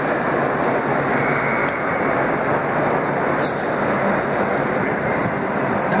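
Audience applause: a dense, steady wash of many hands clapping, with crowd voices mixed in.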